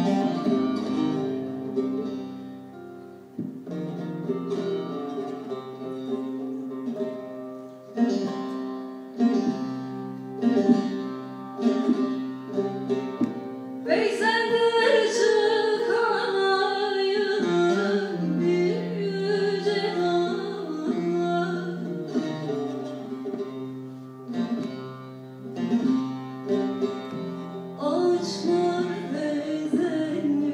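Turkish folk ensemble of bağlama (saz) long-necked lutes playing a plucked instrumental passage of a türkü; about halfway through a woman's sung phrase rises over the strings, and the instruments carry on alone near the end.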